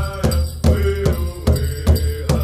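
A powwow drum group: several drummers striking one large hide-covered powwow drum together in a steady beat, about two strokes a second, with voices singing a chant over it.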